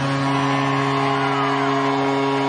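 Arena goal horn sounding one long, steady chord of several tones over crowd noise, signalling a Blue Jackets home goal.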